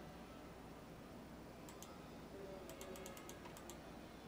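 Faint computer keyboard typing: two key clicks a little under two seconds in, then a quick run of about eight, over a low steady hum.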